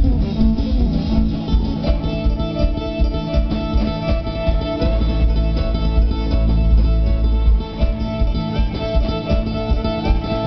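Live band playing an instrumental passage of the song: plucked and strummed string instruments over a steady, heavy bass, with no singing.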